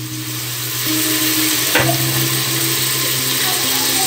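Onions and freshly added tomatoes sizzling in oil in an aluminium pressure cooker, stirred with a steel ladle that knocks against the pot about two seconds in. A steady low hum runs underneath.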